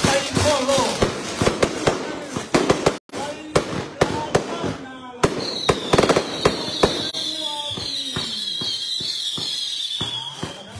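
A large bang fai, a Thai-Lao black-powder rocket, launching: a rapid string of sharp cracks and bangs, then from about five seconds in a steady high hiss from the rocket motor that slowly falls in pitch.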